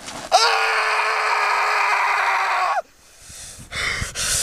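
A man's long, anguished scream, held at one steady pitch for about two and a half seconds, then cut off abruptly; a sharp breath follows near the end.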